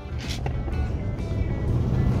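Low rumble of a Nissan pickup's engine and tyres heard from inside the cab as it pulls away from a stop, growing slightly louder as it gathers speed, with background music playing over it.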